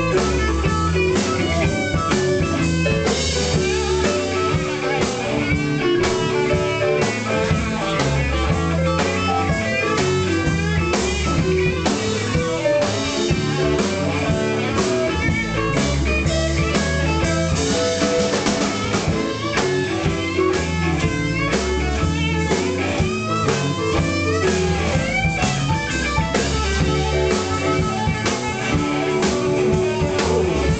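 Live blues band playing: electric guitars over a drum kit, with a harmonica played into the vocal mic, its notes bending and wavering.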